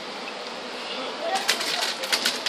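Steady low hiss, then from about a second and a half in a rapid run of sharp clicks and rustles from the handheld recording device being handled close to its microphone.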